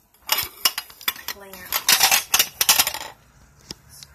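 Rapid clattering and knocking of hard objects handled close to the microphone, lasting about three seconds and stopping abruptly, with one more single knock shortly before the end.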